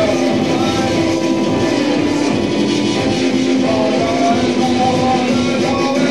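Live rock band playing loud, guitar-driven music, with a vocalist singing into a microphone.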